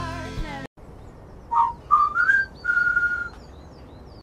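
A song with singing cuts off abruptly just under a second in. About a second later come three short whistled notes: the first brief, the second sliding upward, the last held level. Faint higher chirps sound behind them.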